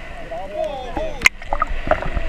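Water and boat noise from the original footage: a low steady rumble with faint, indistinct voices, and one sharp knock about a second in.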